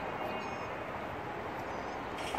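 Steady outdoor background noise with a few faint, brief high-pitched chirps, once early on and again near the end.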